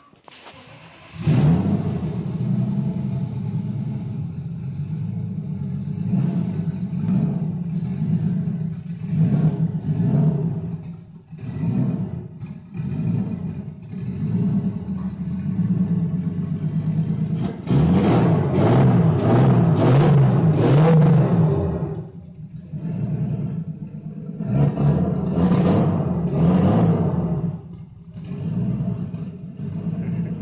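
Turbocharged BMW M50 straight-six in an E30 running in a barn and being revved: it comes in suddenly about a second in, with short blips of revs at first, then two longer, louder runs of revving past the middle and again near the end.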